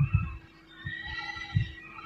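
A pause in a man's speech: a few soft low thumps, near the start, about half a second in and again past a second and a half, over a steady low electrical hum.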